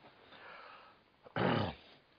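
A man's short wordless vocal sound, like a drawn-out "ah" or hum falling in pitch, a little past halfway through, after a faint breath.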